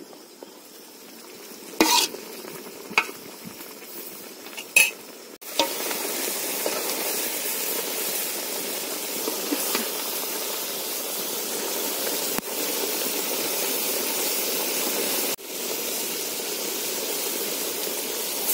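Egg masala gravy sizzling and frying in a large aluminium pot while a metal ladle stirs and scrapes it, with a few clinks of the ladle on the pot in the first seconds. From about five seconds in the sizzle turns loud and steady as the gravy fries down.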